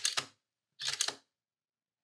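Camera shutter firing to take a photo: a quick run of mechanical clicks, then a second set of clicks just under a second later.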